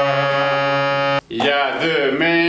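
Harmonium playing a steady held chord, which cuts off abruptly just over a second in. After a brief gap, a man's voice comes in with long, sliding notes.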